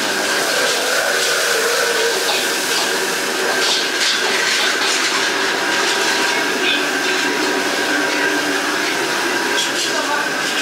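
Steady, loud whir of a commercial stir-fry kitchen's extractor hood and gas wok burners running, with a steady high whine through it and a few light clinks of cookware.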